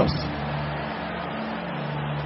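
A low, sustained keyboard chord held under a steady wash of congregation noise, between the preacher's phrases during prayer.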